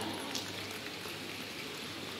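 Faint, steady applause from a crowd, a dense even patter of clapping, with a low hum underneath.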